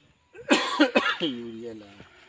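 A person coughing, then a short stretch of voice that falls slightly in pitch and fades.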